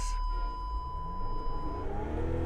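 Mercedes G 350d diesel engine running with a low rumble while stuck in a mud pit, under a steady high electronic warning tone from the cabin that cuts off shortly before the end.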